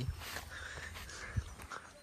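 Faint rustling and handling noise, with a soft low thump about one and a half seconds in.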